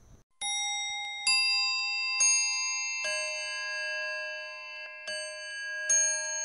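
Background music of slow, ringing bell-like notes, each held and overlapping the next, with a new note struck roughly every second.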